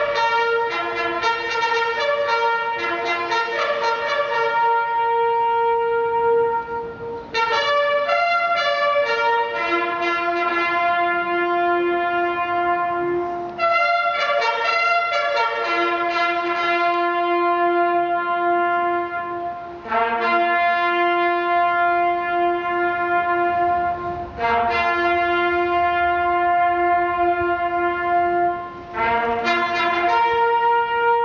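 Four bugles sounding a slow call in unison: long held notes in phrases, each broken by a brief pause every five or six seconds.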